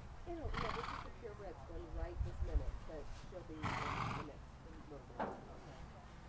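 A horse snorting twice, each a rushing blow of about half a second, near the start and about four seconds in.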